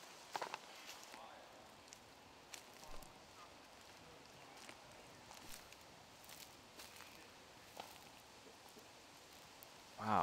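Near silence: faint outdoor room tone with a few soft, scattered ticks and rustles.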